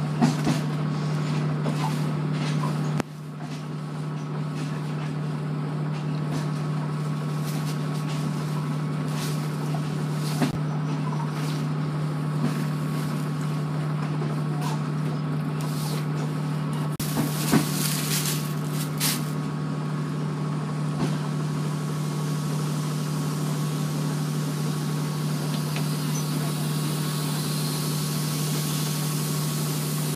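Steady low machine hum inside a sleeper train carriage, with scattered light knocks and rustles as bedding is handled on the bunks.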